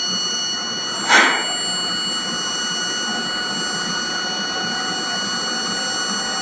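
Vibratory stress relief exciter motor running at about 2,800 rpm as it is slowly brought up in speed, a steady mechanical whir. A brief burst of noise sounds about a second in.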